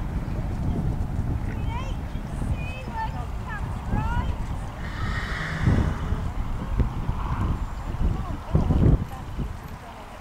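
Pony trotting on a sand arena surface, its hoofbeats dull and muffled, under a steady low rumble on the microphone. Short high chirps come through in the first half, and there is a heavier thud near the end.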